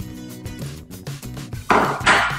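Background music with steady sustained notes changing in a regular pulse; near the end a short, loud rush of noise cuts across it.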